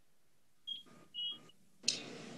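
Two short electronic beeps in near quiet, about a second in. Near the end a steady hiss comes in.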